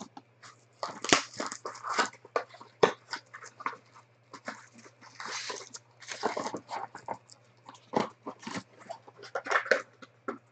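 Foil trading-card packs and a cardboard box being handled and unpacked: an irregular run of crinkles, rustles and light taps with short gaps between.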